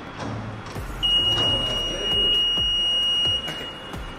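Office security speed-gate turnstile buzzer sounding one steady high-pitched tone, starting about a second in and lasting about two and a half seconds.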